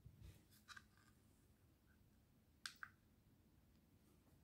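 Near silence with a few faint clicks from a small plastic power bank's push button being pressed. The clearest pair comes about two and a half seconds in, the press that switches on its charge-level indicator.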